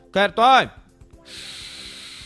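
A steady hiss begins about a second in and lasts nearly two seconds before stopping abruptly, over a faint music bed.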